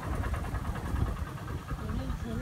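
Low, uneven engine and road rumble of an auto-rickshaw on the move, heard from inside its open passenger cabin.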